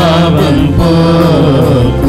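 Music: a church hymn sung with sustained instrumental accompaniment, the melody gliding between held notes.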